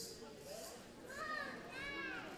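Young children chattering, with high calls that rise and fall in pitch from about a second in, and a brief click right at the start.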